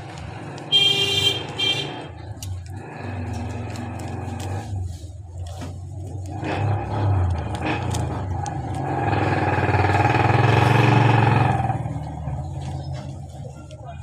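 Road traffic: a steady low engine hum, a brief horn blast about a second in, and a vehicle passing that grows louder and then fades, loudest a little past the middle.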